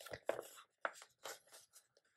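A paper sticker sheet being handled as a sticker is picked off it: four or five short, soft paper rustles and scrapes in quick succession.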